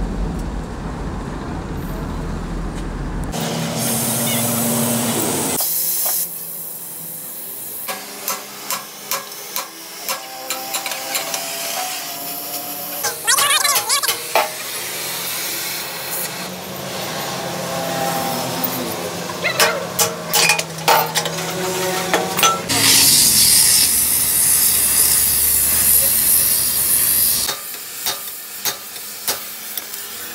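Heavy hammer blows on a steel trailer axle, coming irregularly in clusters, each strike ringing briefly. A low rumble at the start, and a loud steady hiss for several seconds in the second half.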